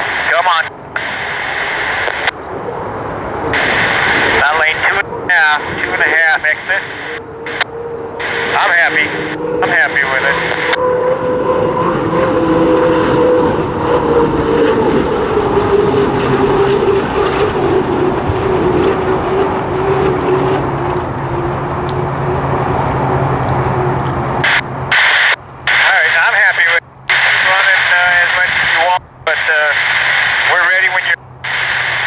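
Unlimited hydroplane's turbine engine running at speed: a steady engine hum with a whining tone that drifts slowly lower in pitch, strongest in the middle of the stretch as the boat passes.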